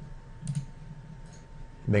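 A computer mouse button clicking once, about half a second in.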